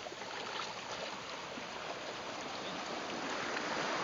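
Shallow seawater sloshing and lapping around a person wading through it, a steady wash of water noise.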